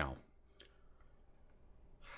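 Two short, faint clicks close together about half a second in, then near silence with faint room tone.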